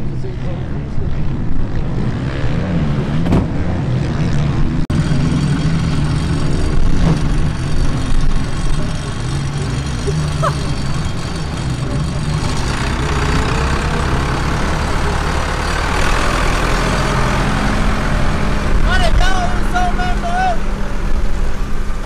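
A farm tractor's diesel engine running steadily. From about halfway through it grows louder and rougher.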